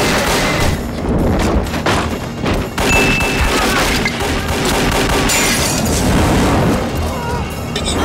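Film action soundtrack: orchestral score mixed with volleys of gunfire, booms and crashes. A brief high tone sounds about three seconds in.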